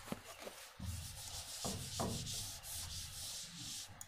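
Whiteboard duster rubbed across a whiteboard, wiping off marker writing in a run of quick scrubbing strokes.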